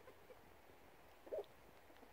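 Near silence of an outdoor wood, broken once a little past halfway by a single very short pitched sound.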